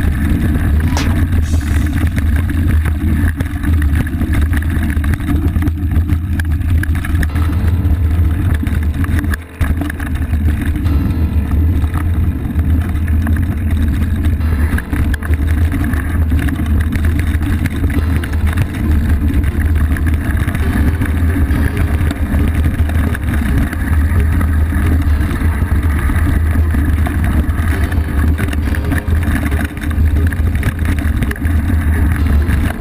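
Off-road motorcycle engine running at steady low revs on a dirt trail, a continuous low drone with a brief dip in level about nine seconds in.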